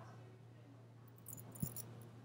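Faint metallic clinking of a steel chain and small brass padlock being handled at a wrist: a few light clinks and a soft knock about a second and a half in.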